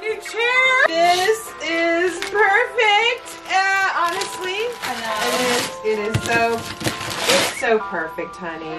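Wrapping paper being ripped off a large gift box in rustling tears over the second half, loudest in two bursts, with excited voices and music playing underneath.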